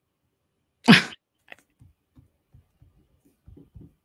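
A person sneezes once, loudly, about a second in. Faint low knocks follow.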